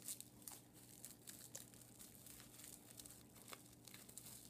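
Faint crinkling of small packaging being handled and unwrapped, a few soft crackles spread over near silence with a low steady hum under it.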